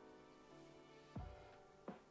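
Faint background music of soft, sustained chords that shift every half second or so, with a brief low thump about a second in.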